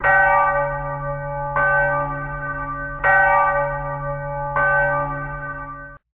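A single bell tolling four times at an even pace, about one stroke every second and a half, each stroke ringing on and fading before the next; the last stroke is cut off suddenly.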